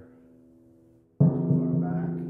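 A timpani struck once with a felt mallet about a second in, its low note ringing on and slowly fading. Before the stroke, the ring of the previous stroke dies away. The stick is held at its balance point so it bounces freely off the head and lets the drum ring.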